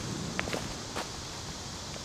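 Footsteps through leafy brush and leaf litter on a forest floor, with a few faint clicks and rustles.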